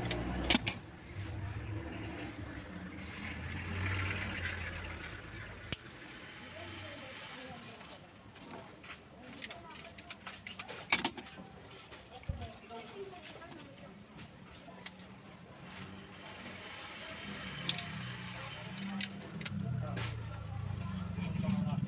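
Motor vehicles running past with indistinct voices in the background, and a few sharp snips of flower stems being cut, the loudest about eleven seconds in.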